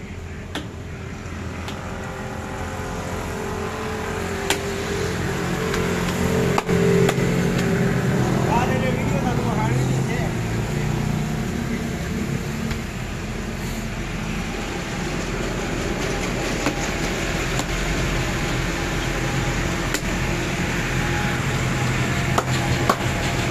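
Steady low motor-like rumble that grows slowly louder, with faint voices in the background and a few sharp knocks.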